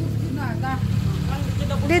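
A steady low engine-like hum, with quiet talk over it.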